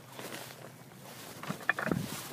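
Faint outdoor background hiss, then a few short clicks and rustles near the end: handling and clothing noise as the camera-holder moves.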